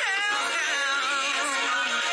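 Pop song with a sung vocal line, played from a radio station stream on a phone; a falling vocal glide comes right at the start.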